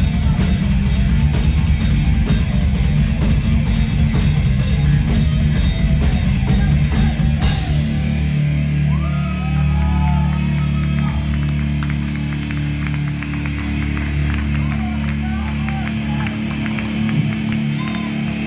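Live rock band at full volume: electric guitar, bass guitar and drum kit. About seven and a half seconds in, a last big hit ends the driving part, and a low held chord rings on and slowly fades, the close of the song.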